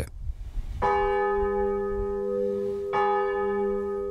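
Church tower bell rung by hand with its rope, struck twice about two seconds apart, each stroke ringing on into the next. It is tolled as an alarm bell.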